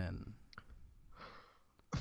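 A spoken word trailing off, then a soft breath out and two small clicks.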